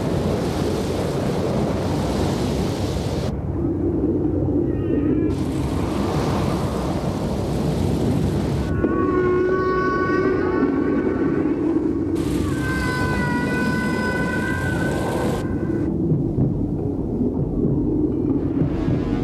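Film sound mix of a river dive. Stretches of broad rushing, rumbling noise alternate with muffled underwater sound. In the second half, several sustained high eerie tones ring over the muffled underwater sound, with a low drone beneath.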